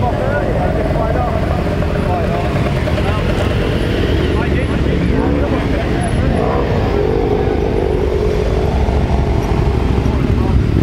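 Many motorcycles riding past slowly in a procession, their engines running together at low revs, with single bikes revving up and down now and then.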